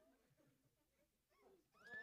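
Near silence, then near the end a faint high-pitched voice sound that rises and falls in pitch: the start of a laugh.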